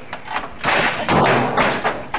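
A computer keyboard being slammed against a monitor and desk: a short knock near the start, then three louder, longer crashes close together.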